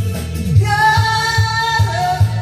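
A woman singing a Korean trot song into a karaoke microphone over the backing track, which has a steady low beat, holding one long note from about half a second in.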